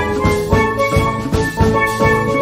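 Background music: an upbeat tune with bright pitched notes over a steady drum beat.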